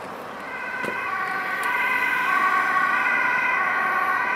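Ambulance two-tone siren, alternating between a higher and a lower note, growing louder from about half a second in as the vehicle approaches, then holding steady.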